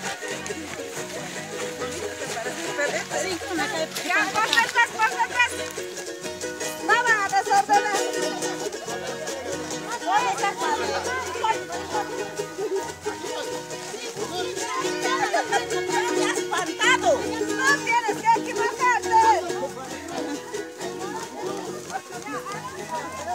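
Carnival coplas: a strummed guitar keeps a steady, repeating rhythm while several voices sing in high-pitched phrases, with chatter from the dancing group around them.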